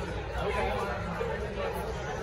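Indistinct chatter of several people talking, with a low steady hum underneath.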